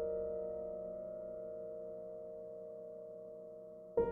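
Soft solo piano chord held with the sustain pedal, slowly dying away, with the next chord struck right at the end.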